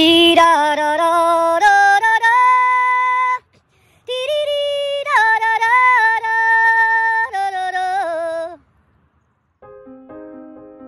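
Music: a high solo voice sings two long phrases of stepped, held notes with a wavering pitch, with a short break between them. Piano comes in near the end.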